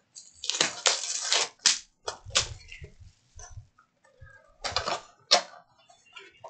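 Plastic shrink-wrap being torn off a sealed Panini Select UFC trading card box and its cardboard lid opened. The sound is a burst of crackling rustles in the first second and a half, then several sharp snaps and crinkles.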